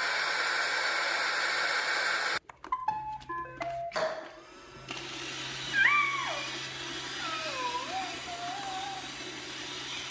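A steady noise for the first couple of seconds, then a short run of stepped electronic tones. After that a robot vacuum runs with a steady low hum, carrying a toddler, who makes a few short calls.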